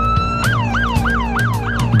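Police car siren: a wail holding its high pitch, then about half a second in switching to a rapid yelp of quick up-and-down sweeps, about five a second, with a low music drone underneath.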